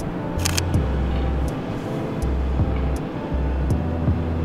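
Background music: a low bass line moving between notes under sustained tones, with a few sharp clicks.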